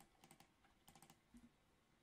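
Faint computer keyboard keystrokes, a few scattered taps, as text is deleted from a line of code; otherwise near silence.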